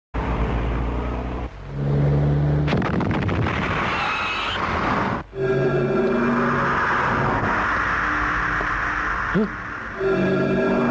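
Film soundtrack music with held, layered chords over a dense wash of sound, changing abruptly about a second and a half in and again around five seconds in.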